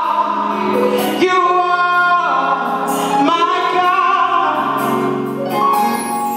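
A woman singing a gospel solo into a handheld microphone, holding long notes and sliding between pitches, over steady low accompanying notes.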